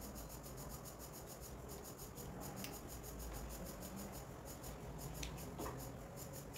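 Faint handling sounds of hands working a small plastic plug and electrical cord: rubbing and fiddling with a few light clicks, over a steady low background hum.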